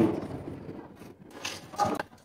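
A gas stove's control knob being turned to light a burner, with two short clicks near the end.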